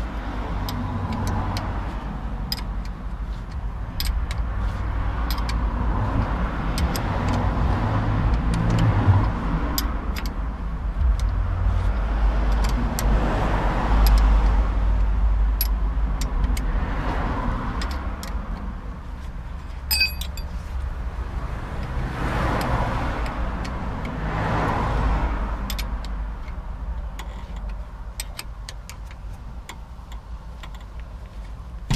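Cars passing several times, each swelling and fading, over a low rumble, with scattered light metallic clicks and clinks from a hand tool working the rear brake caliper bolts.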